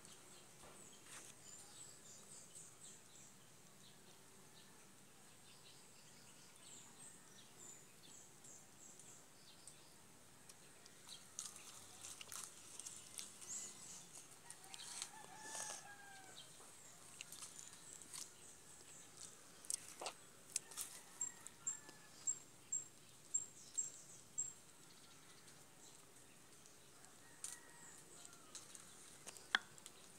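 Faint rooster crowing once, about halfway through, over a quiet background. Later comes a quick run of short, high-pitched peeps, and a few sharp clicks sound here and there.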